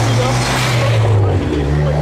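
Street traffic: a car passing close by, swelling and fading within the first second or so, over a steady low engine hum from other vehicles.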